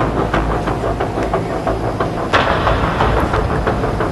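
Airfield ambience at an aircraft's boarding stairs: a steady low rumble under quick, irregular clicks, with a louder burst of noise a little past halfway.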